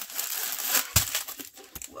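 Clear plastic packaging crinkling as a strip of small bagged round diamond-painting drills is pulled out and handled, the drills clicking and rattling inside, with a sharper knock about a second in.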